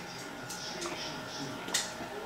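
Faint background voices and music, with one sharp click about three-quarters of the way through.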